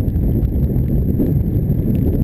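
Steady low rumble and buffeting on a bicycle-mounted camera's microphone while riding on a wet road: wind and road vibration, with a fast, uneven flutter.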